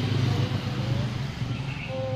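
Low, steady rumble of a motor vehicle passing on the street.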